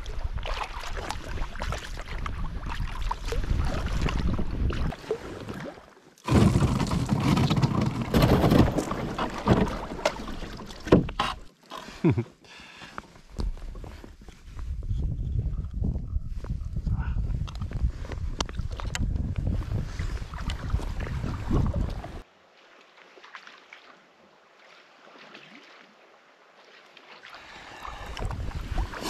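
A loaded sea kayak being paddled on calm water: paddle strokes and water sounds, with wind on the microphone at times. There are a few sharp clicks about eleven to thirteen seconds in, and the last several seconds are much quieter.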